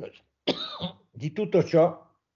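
A man's voice in two short bursts, clearing his throat.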